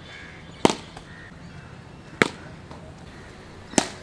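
A cricket bat striking the ball three times, each a sharp crack about a second and a half apart.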